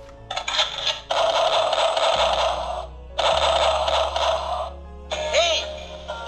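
Battery-powered toy machine gun's electronic sound effect playing through its small speaker: two long bursts of rapid-fire noise, then sweeping up-and-down electronic tones near the end, over background music.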